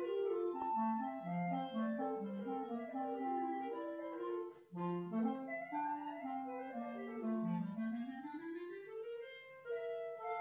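Two clarinets playing a classical duet: a melody above a moving lower part, with a short break a little before halfway and the lower clarinet climbing in a steady rising run near the end.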